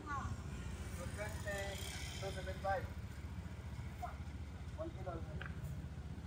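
Faint, indistinct voices of people talking, over a steady low rumble.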